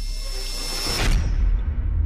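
Outro logo sound effect: a deep bass rumble under a high hiss that cuts off about a second in, giving way to a swelling low bass note of the end-screen music.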